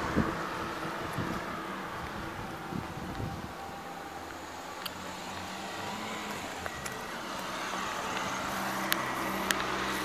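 A car driving past on the street, its tyre and engine noise fading away over the first few seconds, then a steady low engine hum with a few sharp clicks near the end.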